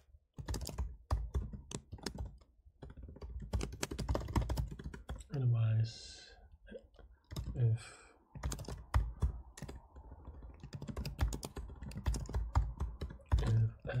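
Typing on a computer keyboard: quick runs of keystrokes with short pauses. A brief vocal sound comes about halfway through.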